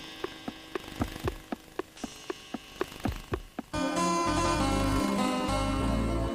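Watch ticking steadily, about four ticks a second. About two-thirds of the way in, the ticking stops and music starts.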